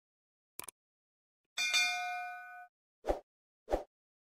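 Subscribe-button animation sound effects: a single mouse click, then a bell-like notification ding that rings for about a second, then two short pops near the end.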